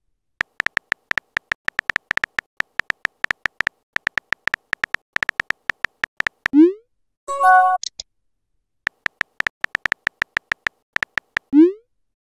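Phone keyboard tap sounds from a texting app: rapid clicks as a message is typed letter by letter, broken about halfway through by a short rising whoosh and a brief electronic chime. The clicking starts again and ends near the end in another rising whoosh as the message is sent.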